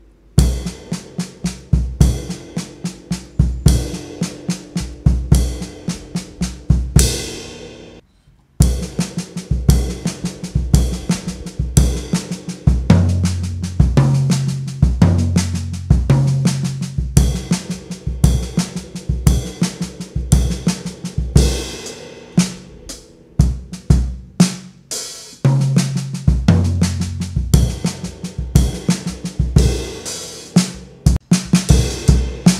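Acoustic drum kit played slowly: a lick in which each cycle opens with a crash cymbal and bass drum together, the rest falls on the snare, and a double stroke sounds on the bass drum. Playing starts about half a second in, breaks off briefly around eight seconds, then goes on.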